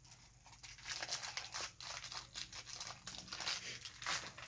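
Thin foil toy wrapper crinkling and tearing as it is opened by hand: a quick run of crackles starting about half a second in.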